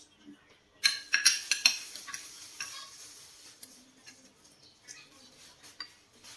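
Metal spoon and fork clinking and scraping against a plate as food is scooped up. A quick run of sharp clinks comes about a second in, followed by softer scraping and a few light taps.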